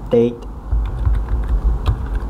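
Typing on a computer keyboard: a quick run of key clicks starting about half a second in, as a short word is typed.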